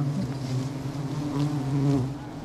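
Wild honeybees buzzing close to the microphone, a steady low buzz that wavers slightly in pitch. The bees are stirred up as their open comb is being cut with a knife.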